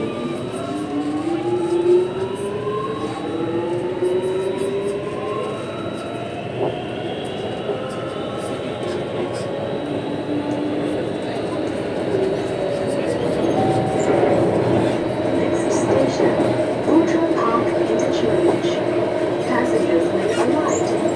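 Alstom ONIX 1500 IGBT-VVVF traction system of a C751A metro train, heard from inside the carriage: several whining tones climb in pitch together as the train pulls away and accelerates, then level off into a steady whine over the wheel and running noise from about twelve seconds in.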